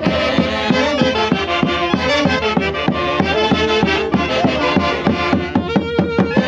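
Saxophone band with two bass drums playing a lively traditional Andean tune: several saxophones in unison over a steady, even drum beat.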